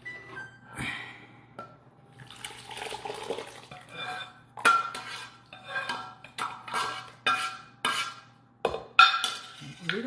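A metal utensil scraping and knocking against a metal pan as tomato sauce is scraped out into a stainless stockpot. There is soft handling at first, then from about halfway through a run of sharp, ringing clanks, two or three a second.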